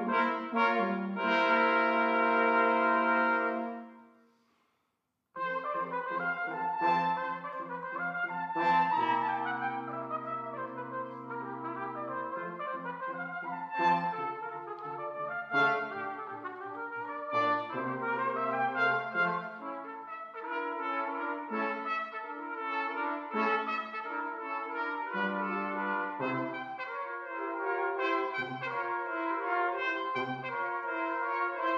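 Brass quintet of trumpets, horn, trombone and a bass brass instrument, on 19th-century period instruments, playing a minuet with five beats to the bar. A loud held chord fades to a short silence about four seconds in, then the ensemble starts playing again.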